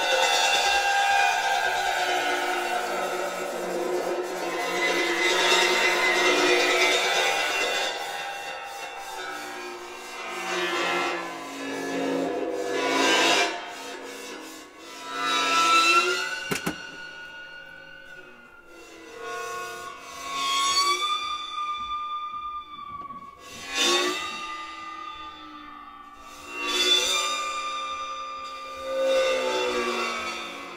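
A cymbal bowed at its edge while being lowered into a tub of water, ringing with many overtones whose pitch bends as the metal enters the water. A dense wash of ringing fills the first several seconds, then comes a series of separate bowed swells every three to four seconds, each with gliding, whale-like tones.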